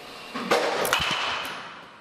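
A 31-inch DeMarini The Goods BBCOR bat hitting a baseball: a sharp crack at contact about half a second in. It is followed about half a second later by a second, duller knock and a brief ring.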